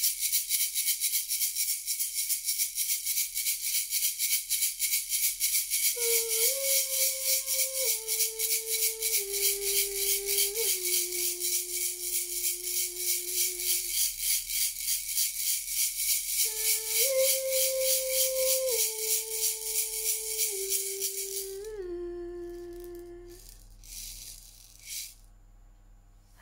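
A hand rattle shaken steadily and rapidly in a ritual invocation, stopping a few seconds before the end. Over it, a woman hums a slow tune of held notes that steps downward, twice.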